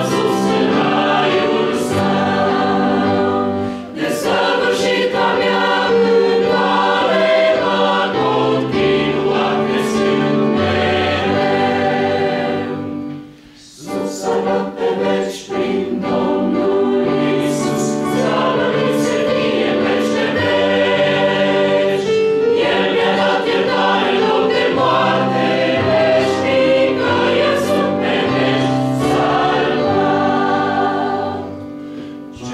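A choir singing, with a short pause between phrases about halfway through before the singing resumes.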